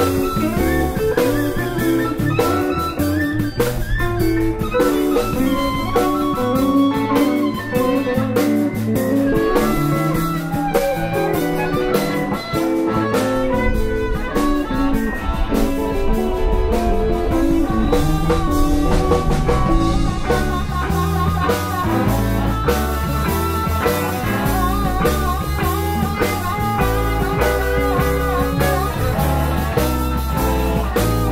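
Live electric blues band playing an instrumental passage: Les Paul and Telecaster electric guitars, bass guitar and drum kit, with a blues harmonica played cupped in the hands in the second half.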